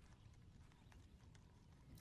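Near silence, with a few faint, irregular clicks.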